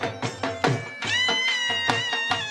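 Traditional folk music: a drum beats a steady rhythm, and from about a second in a high, reedy lead instrument holds a long, slightly wavering note.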